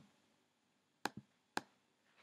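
Three faint, sharp clicks over near silence, two close together about a second in and a third about half a second later: mouse clicks while plugin knobs are being set.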